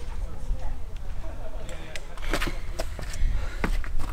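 Hiking boots stepping on rock and loose stones, the footfalls coming closer and louder from about halfway through, over a steady low wind rumble on the microphone.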